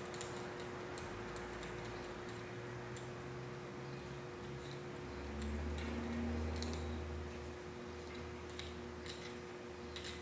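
Faint, scattered light clicks and ticks of small parts being handled and threaded onto a TIG torch head (a stubby gas lens, the tungsten and a small ceramic cup), over a steady low hum.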